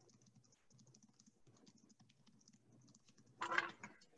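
Faint typing on a computer keyboard, a run of light quick keystrokes, with one brief louder sound about three and a half seconds in.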